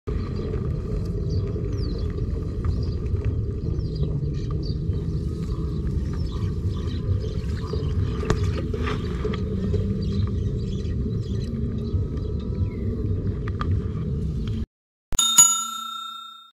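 A steady low rumble with faint small clicks that cuts off suddenly near the end, followed by a single bright bell-like ding that rings and fades over about a second.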